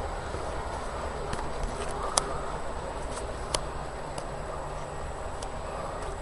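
Steady low background noise with a faint hum, and two light clicks about two seconds and three and a half seconds in.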